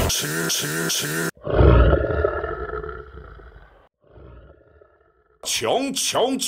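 Rock band song excerpts edited together: band music with a singing voice cuts off after about a second, followed by a loud shouted or held vocal over the band that fades away over a couple of seconds, a short fainter passage, a brief silence, and a new song starting abruptly near the end.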